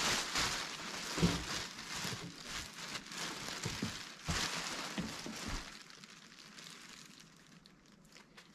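A plastic bag rustling and crinkling as hands dig through it, with a few soft thumps of things being moved. It fades out about six seconds in.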